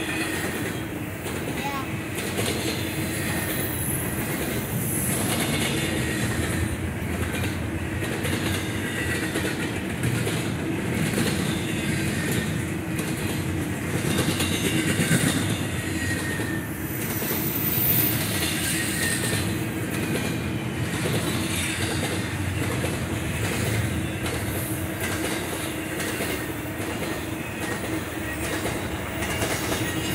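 Long double-stack intermodal freight train passing at speed: a steady rumble of steel wheels over the rails with clickety-clack from the rail joints, and brief faint wheel squeals now and then.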